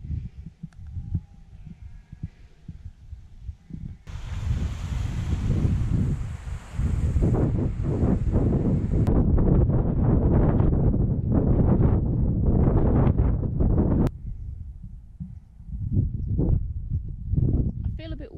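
Wind buffeting the action camera's microphone while a runner moves over grassy fell ground, with the thud of footfalls. The wind rush comes in loudly about four seconds in and cuts out sharply about four seconds before the end, leaving quieter thumping.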